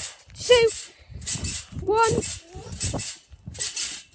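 Backyard trampoline's springs creaking and jingling in a steady rhythm as someone bounces, two creaks to each bounce, a bit more than one bounce a second. Short wordless vocal sounds from the jumper come in between.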